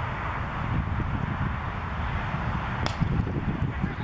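A single sharp crack about three seconds in, a cricket bat striking the ball, over a steady low rumble of wind on the microphone.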